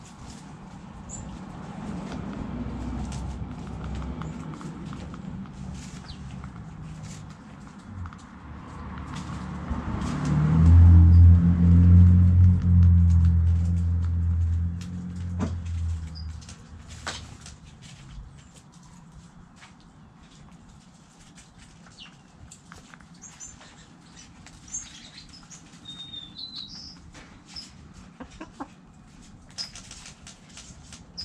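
Backyard hens foraging, with soft clucks and scattered pecking and scratching clicks. About ten seconds in, a low steady rumble swells up, is the loudest sound for several seconds, and fades out. Short high chirps come near the end.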